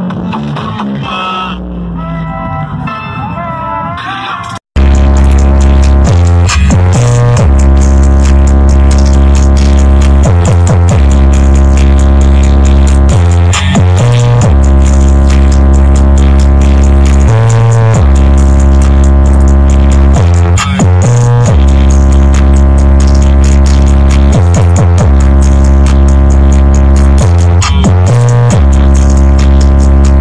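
Electronic music played very loud through a paredão, a truck-mounted wall of car-audio speakers, with deep bass notes held for a few seconds at a time. The opening seconds are quieter music, broken by a brief dropout about five seconds in, after which the loud playback begins.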